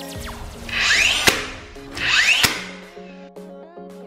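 DeWalt 20V cordless framing nailer firing twice into wall framing lumber, about a second apart. Each shot is a rising whine as the tool winds up, ending in a sharp crack as the nail is driven.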